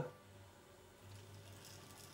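Very faint running of a 00 gauge model locomotive, its small motor and wheels on the track barely above room tone, a little louder in the second half.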